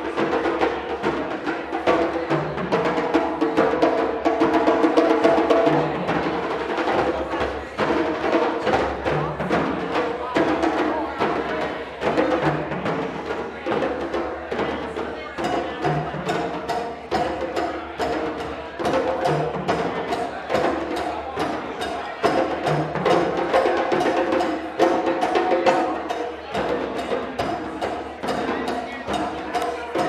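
An ensemble of djembes played with bare hands over tall standing dunun drums struck with sticks, a fast, steady West African drum rhythm with dense strokes and a low drum note recurring every second or two.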